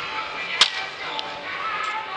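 A wooden baseball bat hitting a pitched ball once, a sharp crack about half a second in, over steady ballpark background noise with faint music.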